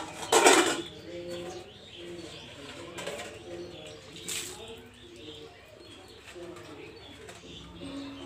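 Stainless steel bowls and plates clattering as they are rinsed and stacked by hand, with water splashing off them; the loudest clatter comes about half a second in, with smaller ones around three and four seconds. Doves coo softly in the background.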